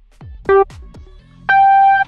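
Electronic race-start countdown beeps: a short beep about half a second in, the last of a series spaced a second apart, then a higher, held 'go' tone from about one and a half seconds in. Faint rhythmic thuds sit underneath.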